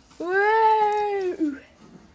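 A person's voice imitating an animal howl: one long call of about a second that rises slightly and then falls away.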